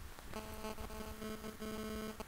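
A faint, steady pitched buzz with several overtones starts about a third of a second in and pulses slightly.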